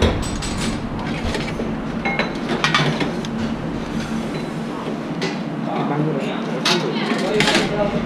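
Restaurant kitchen during service: scattered sharp knocks and clatter of metal trays, racks and utensils over a steady low hum, the loudest clatter near the end.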